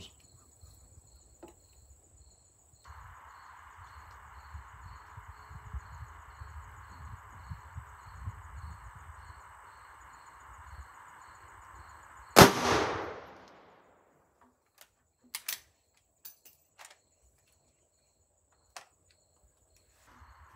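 A single shot from a Rossi R92 lever-action rifle in .357 Magnum, about twelve seconds in: a sharp crack that rings on and dies away over about a second. A few faint clicks follow.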